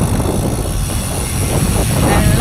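Wind rushing over the camera microphone on a moving road bike, a loud steady rumble.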